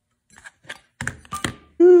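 About half a dozen sharp, irregular clicks and taps over about a second, then a man's drawn-out "ooh" near the end.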